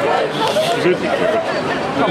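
Several voices chattering and calling over one another, with no single clear speaker.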